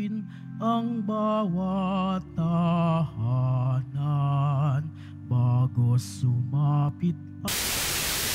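A single voice sings a slow church hymn in short phrases over sustained low keyboard chords. Near the end, a burst of loud static hiss lasting about a second cuts across the music.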